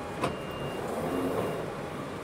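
Victoria line Underground carriage halted at a platform: a sharp clunk about a quarter of a second in, then short high beeps as the doors open, over a steady background rumble.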